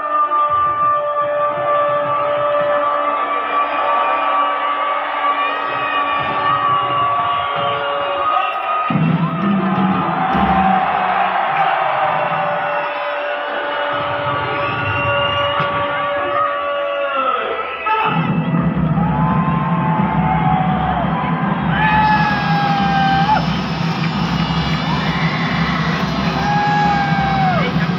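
Large crowd in the stands cheering, shouting and whooping over music from loudspeakers. Long held notes run through the first eight seconds and again from about ten to seventeen seconds, and the sound grows fuller at about eighteen seconds.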